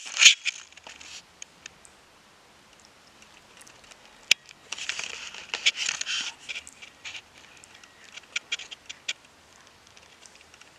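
Camera handling knock at the start, then scattered small clicks and taps of a spoon and a short scratchy rustle about five seconds in, as a baby feeds herself with a spoon.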